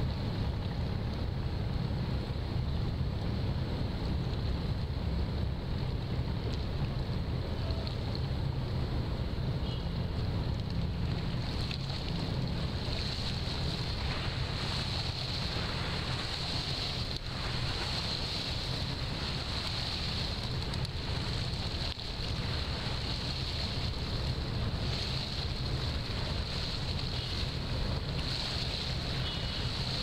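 Wind buffeting the microphone, a steady low rumble over waterside ambience, with a thin high hiss joining about twelve seconds in.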